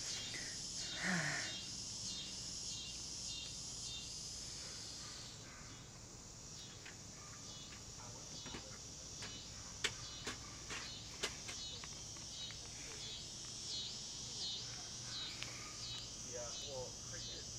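Chorus of insects chirping high-pitched in a steady, pulsing rhythm, with a few sharp clicks around the middle.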